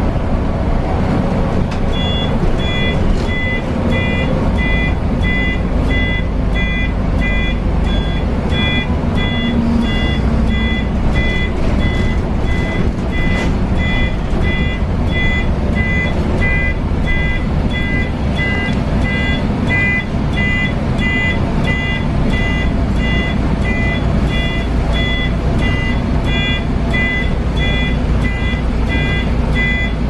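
Mercedes-Benz O405NH bus running, heard from inside the cab as a steady low rumble. About two seconds in, an electronic beep starts in the cab and repeats about twice a second over the engine.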